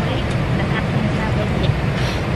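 Steady low rumble of an airliner's cabin noise, the engines and airflow heard from a passenger seat.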